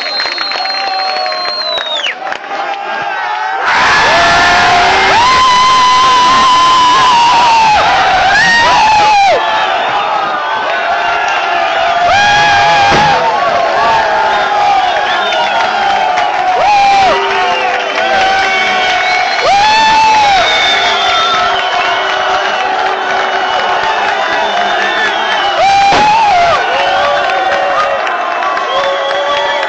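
Football crowd cheering and shouting, breaking out loudly about four seconds in and staying loud, with many voices yelling over one another. A long high whistle sounds over the first two seconds.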